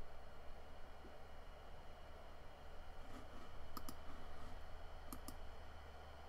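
Computer mouse clicking: two quick double clicks about a second and a half apart, over a faint steady low hum.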